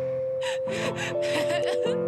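A young woman sobbing, catching her breath in gasps and whimpers over soft sustained background music.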